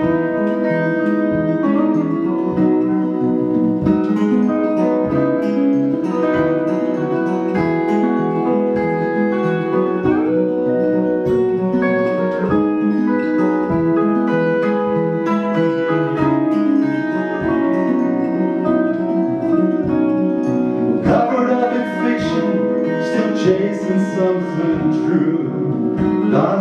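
Instrumental break on two guitars: a strummed acoustic guitar with an electric guitar playing over it, including a few bent, rising notes.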